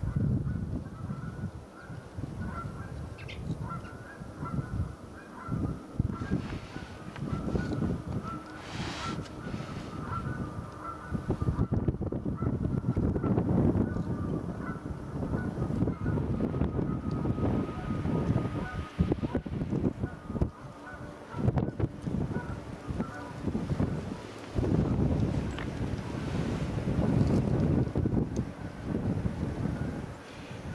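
Distant rumble of an Air Canada Rouge Boeing 767-300ER's jet engines as it rolls along the runway, with gusty wind buffeting the microphone.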